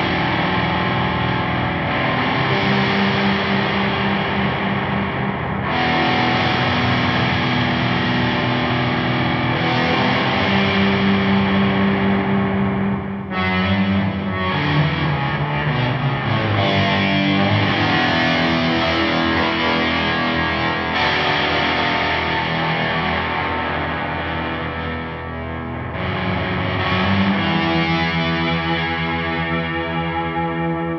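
Electric guitar, a Gibson Les Paul, played through the EarthQuaker Devices Time Shadows II delay synthesizer on its EarthQuaker program, with the filter set by an envelope. Sustained, distorted chords with delay wash, each held for a few seconds before the next.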